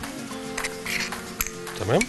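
Background music with long held tones, with a few light clinks of a metal spoon against a bowl as a seasoning is spooned in.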